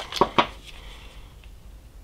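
Light handling clicks from unscrewing the screw-on end cap of a flashlight power bank: two short clicks about a fifth of a second apart near the start, then faint handling.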